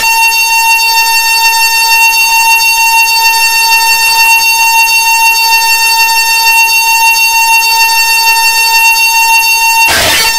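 Loud, steady electronic buzzing drone from a noise-music piece: one harsh sustained tone, rich in overtones, that cuts in abruptly and holds unchanged until it breaks off suddenly near the end.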